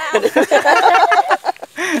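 A man laughing loudly in quick bursts, mixed with other voices, then a short spoken word near the end.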